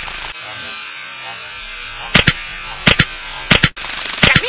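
Steady electric buzzing hiss. In its second half it is broken by several short, sharp clicks and a brief dropout.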